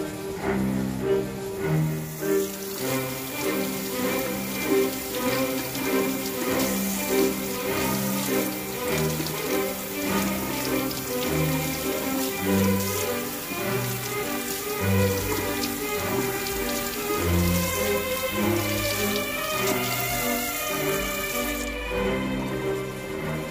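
Background music playing throughout, over a kitchen tap running into a sink as raw meat is rinsed under it. The water starts about two seconds in and stops just before the end.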